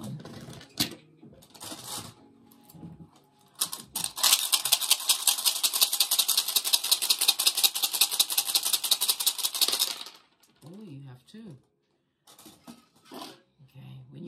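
Rune stones shaken together, a dense, rapid clattering rattle that starts about four seconds in and stops about six seconds later, with a few lighter handling clicks before it.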